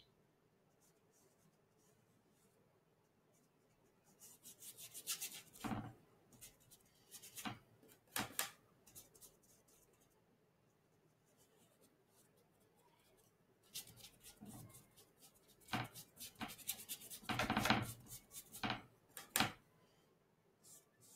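A paintbrush loaded with oil paint being scrubbed back and forth across canvas: short scratchy rubbing strokes in two spells, the first starting about four seconds in and the second around fourteen seconds, with a quiet pause between.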